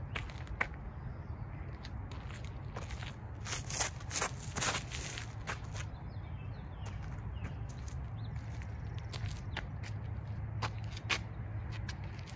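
Footsteps scuffing on a concrete tee pad during a disc golf drive's run-up and throw, with a cluster of louder scuffs and clicks about four to five seconds in, then single footsteps walking back. A steady low rumble lies underneath.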